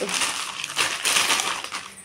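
Clear plastic packaging crinkling as a packet of clothes is handled, the crackle fading toward the end.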